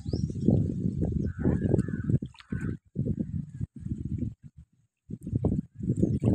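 Low, irregular rumble of wind buffeting the microphone, rising and falling in gusts, with a brief lull about five seconds in.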